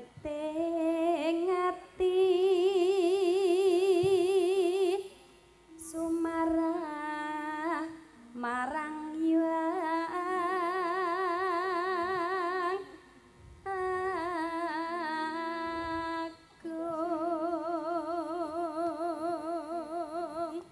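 A Javanese sinden (female gamelan singer) singing unhurried, long-held notes with a wide, even vibrato, through a handheld microphone. She sings about five phrases, each broken off by a short pause for breath.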